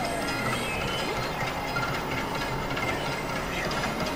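Experimental electronic noise music: a dense, steady wash of clattering, machine-like noise with faint high tones and a few brief pitch slides.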